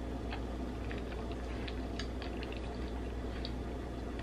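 Faint scattered clicks of a spoon in a bowl of oatmeal and mouth sounds as a bite is tasted, over a steady low hum.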